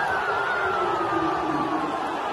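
Football crowd in a stadium stand cheering and shouting, with one long held shout close by that slowly falls in pitch across the two seconds.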